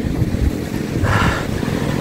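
Wind buffeting the microphone: an uneven, gusting low rumble, with a brief higher hiss about a second in.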